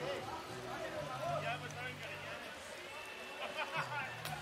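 Indistinct voices of several people talking outdoors, over a low steady hum.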